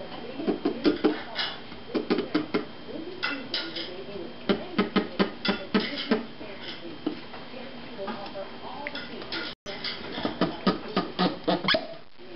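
A cork creaking and clicking in quick runs of short squeaks as it is levered out of a wine bottle by a hammer claw hooked on a drywall screw driven into it.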